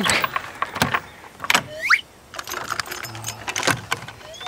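Metal chain rattling and clanking against a wooden cage door as it is wrapped round and locked with a padlock, a run of sharp clicks and clatters. A short rising squeak comes about halfway through.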